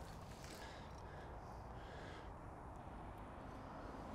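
Quiet outdoor background: a faint, steady low rumble with no distinct event.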